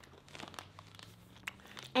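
Faint rustling of fabric and cushions, with a few soft clicks scattered through it.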